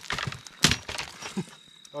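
Hatchet chopping into a dry dead tree root: one sharp crack a little over half a second in, with smaller splintering cracks around it. Crickets chirp steadily in the background.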